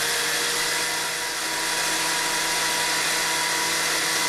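Electric stand mixer running steadily at high speed, its whisk beating thickened cream: a steady motor whine with a slight dip about a second and a half in.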